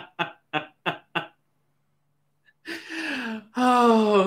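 A man laughing hard in short rhythmic bursts, about four a second, that stop a little over a second in. After a pause, a rasping breath and a long drawn-out voiced sound, falling in pitch, as the laughter winds down.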